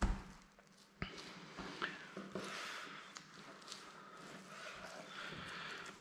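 A single thump as a deer shoulder is turned over on the cutting board, then a click about a second in and faint handling noise with a few soft clicks.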